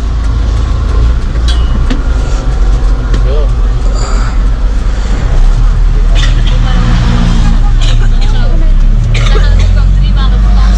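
Engine of a non-air-conditioned local bus running under way, a loud steady low rumble heard from inside the cabin, its pitch shifting about halfway through and again near the end.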